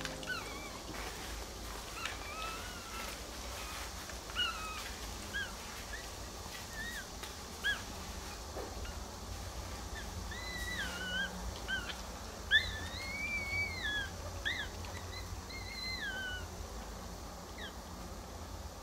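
Newborn Maltese puppies crying with short, high squeaks scattered throughout. From about ten seconds in come longer cries that rise and fall, over a low steady background hum.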